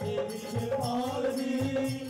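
Live devotional music: harmonium melody held over a steady beat on a dholak (barrel hand drum).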